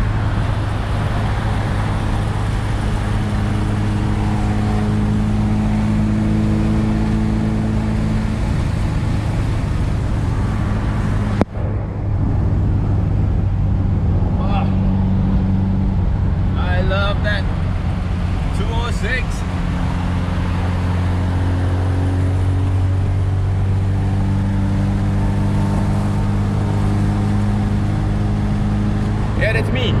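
Cabin sound of a 1979 Alfa Romeo Alfetta 2.0 cruising at motorway speed: a steady engine drone under tyre and road noise, its pitch drifting slightly as the speed changes. The car is running smoothly, without vibration, on newly fitted driveshaft couplings. The sound cuts out briefly about eleven seconds in.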